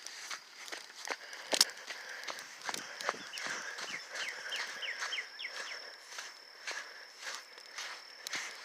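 Footsteps on a soft sand path at a walking pace, about two steps a second, with one louder step or brush about one and a half seconds in. A thin, steady high tone runs behind them, and a quick run of short falling chirps comes a few seconds in.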